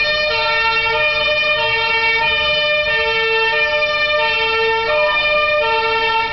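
Siren of a fire brigade command van, a loud, steady two-tone siren whose pitch switches back and forth about every second as the van drives past.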